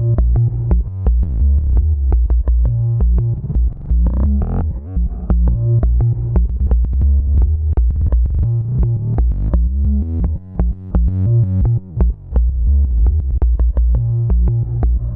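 Electronic synth-bass loop with beats played from a Roland SPD-SX sampling pad, run through its S-Loop master effect set to auto quarter notes, which repeats and chops the audio in time. The bass is heavy and the rhythm breaks off in short gaps twice near the end.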